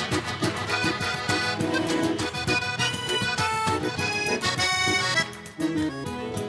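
Instrumental break of a gaúcho dance tune: a piano accordion plays the melody over a strummed nylon-string acoustic guitar keeping a quick, even rhythm.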